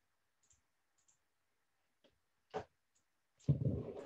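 A few light clicks over quiet call audio: faint ticks early on, then one sharper click about two and a half seconds in. Near the end a louder rush of noise starts up, running into a voice.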